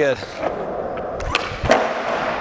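Skateboard wheels rolling on a smooth concrete floor, with two sharp clacks from the board about a second and a half in.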